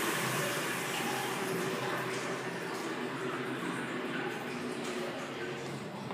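Water hissing and running in the restroom plumbing after a flush, a steady rush that slowly tapers off.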